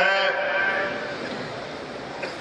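A man's voice over a microphone and loudspeakers, holding one long, slightly wavering vowel for about a second before it trails off into the hall's echo.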